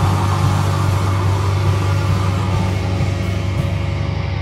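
Punk band playing live through amplifiers: a loud, steady held low chord from the electric guitar and bass, without singing.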